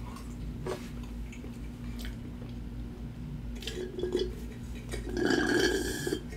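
Quiet chewing and mouth sounds, then near the end a louder sip of soda drawn through a straw from a can. A faint steady hum sits underneath.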